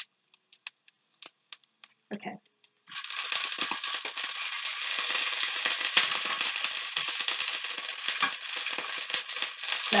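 Scallops pan-searing in hot oil in a nonstick skillet: a few sharp clicks, then about three seconds in a dense crackling sizzle starts and keeps on, with the oil popping.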